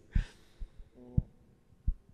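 Breath and a soft laugh blowing into a handheld microphone held close to the mouth, giving three low thumps about a second apart, the first with a breathy rush.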